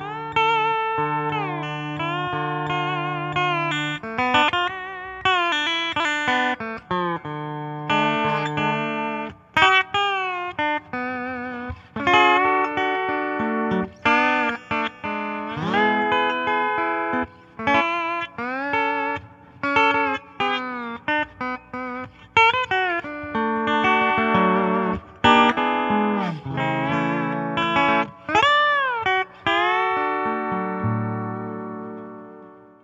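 Recording King all-mahogany lap steel guitar played solo through its P90 pickup, picked with a thumbpick and fretted with a steel bar. Notes slide up and down in pitch between picked notes and chords.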